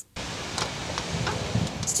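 Steady outdoor ambient noise with a low rumble and a few faint ticks, starting after a very brief drop to silence.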